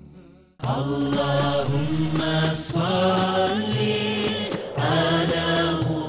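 Chanted vocal music: a voice singing long held notes with a wavering ornament. It starts suddenly about half a second in, after the channel jingle has faded out.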